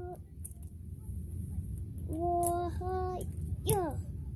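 A child's voice singing two held notes in a row, then a short falling vocal slide near the end, over a steady low hum.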